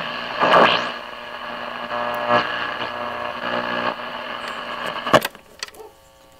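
A 1950s Zenith Trans-Oceanic tube radio playing a broadcast through static, with a word or two of speech near the start. About five seconds in there is a sharp click, after which the sound drops to a faint steady hum.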